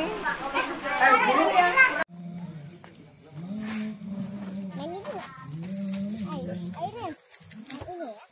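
Loud overlapping chatter and laughter of children and adults. It cuts off suddenly about two seconds in, giving way to a group of men chanting a devotional recitation together in long held, gliding notes.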